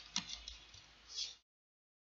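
A few faint computer mouse clicks as the slide is advanced, then the sound cuts off suddenly to dead silence about a second and a half in.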